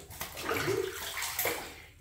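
Shallow bathwater sloshing and splashing irregularly around a hairless cat's legs as it is held and washed in a tub.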